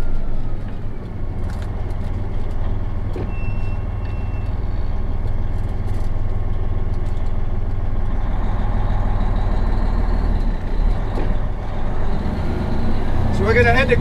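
Semi truck's diesel engine running, heard from inside the cab as the truck pulls away and is shifted through its 13-speed manual transmission; the engine note changes about eleven seconds in at a gear change.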